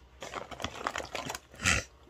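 Small cosmetic packages being handled: light plastic clicks and crinkling rustles, with a louder rustle and soft thud near the end.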